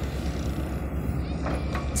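Backhoe's diesel engine running steadily nearby, a low, even pulse.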